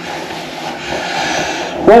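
Towel rubbing over a freshly shaved face, a steady rustling hiss that grows a little louder toward the end. A man starts to speak just as it ends.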